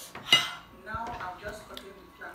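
Metal fork clinking against a ceramic dinner plate while eating noodles: one sharp clink about a third of a second in, then fainter clatter.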